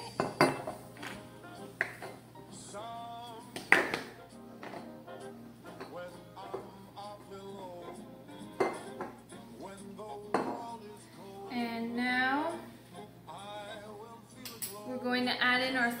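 Background music with a few sharp metal clinks of a measuring spoon against a stainless-steel stand-mixer bowl and paddle, the loudest about four seconds in.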